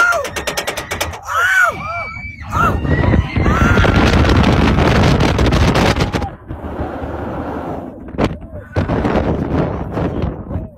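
Roller coaster running along its track, the car clattering and rattling hard with wind buffeting the phone microphone; viewers watching call the sound raggedy, like it is about to fall apart. A rider's short cries come early, and the rattling is loudest in the middle stretch.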